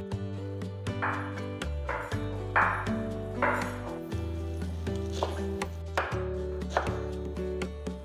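Kitchen knife chopping fresh fenugreek leaves on a wooden board, with short strokes at an uneven pace of roughly one a second. Background music with sustained tones plays underneath.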